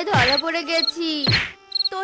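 Cartoon stick-beating: a character's voice wails and cries out in pain, and two stick whack sound effects land, one right at the start and one just past a second in. A looping cricket-chirp night ambience runs under it.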